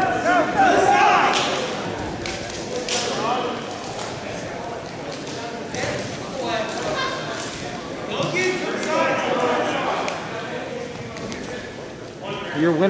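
Voices shouting across a gymnasium during a wrestling bout, likely coaches and spectators calling to the wrestlers. The shouts come in bursts near the start and again in the second half, with a few sharp thumps, likely bodies on the mat, in between.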